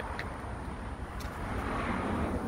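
Steady outdoor background noise, a low rumble with some hiss, with a couple of faint clicks.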